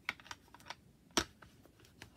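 Quick, light clicks and taps of small craft supplies being handled and set down on a tabletop, with one sharper knock about a second in.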